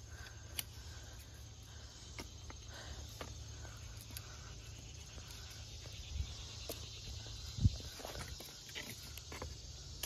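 Footsteps and rustling on leaf litter and creek-bank ground, with small clicks and handling bumps, the loudest a low thump about seven and a half seconds in, over a steady background of insects chirring.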